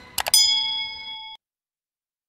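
Subscribe-button sound effect: two quick mouse clicks followed by a bright notification-bell ding that rings for about a second and then cuts off suddenly.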